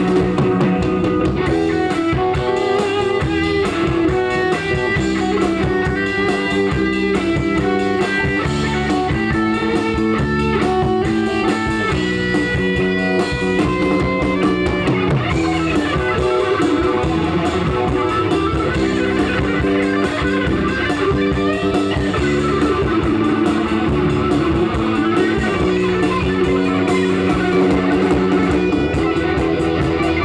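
Rock band playing live through a PA: an instrumental break with electric guitar playing a melody over bass guitar and drums, and no singing.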